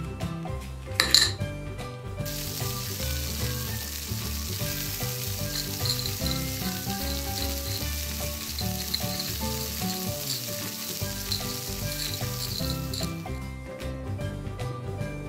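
Sizzling frying-pan sound effect, a crackling hiss that starts about two seconds in and stops about a second before the end, laid over light background music as toy fries are cooked in a toy pan. A short sharp sound comes about a second in, as the fries are tipped into the pan.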